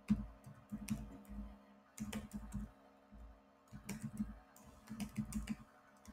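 Computer keyboard typing in short bursts of keystrokes with brief pauses between them.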